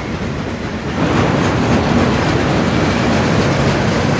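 Freight train of enclosed autorack cars rolling past: the steady noise of steel wheels on the rails, louder from about a second in, with faint repeated clicks.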